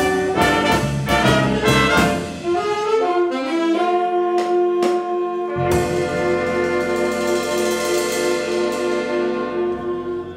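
Student jazz big band of saxophones, trumpets, trombones and rhythm section playing the close of a tune: busy ensemble figures, two short accented hits, then a long held final chord that is cut off just before the end.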